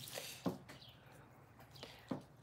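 Quiet room with a faint short rustle at the start, one sharp click about half a second in and a smaller click near the end.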